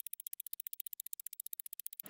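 Quiet, rapid clock ticking, sped up to about fifteen even ticks a second: a time-passing sound effect.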